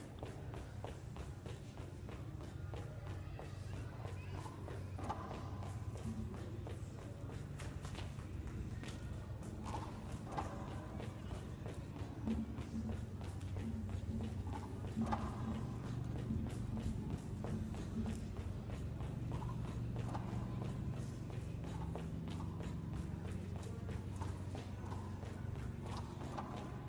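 Quiet background music with shifting low notes, over a rapid run of light taps from a soccer player's feet and ball on concrete as she drags the ball back and forth with her soles.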